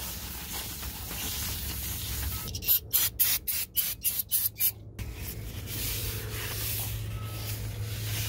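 A paper towel rubbing over a new brake rotor, then an aerosol can of brake cleaner sprayed in a rapid string of short bursts, about four a second, for a couple of seconds.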